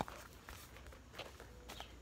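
Faint handling sounds: light rustles and small taps of small packaged items being put down and picked up.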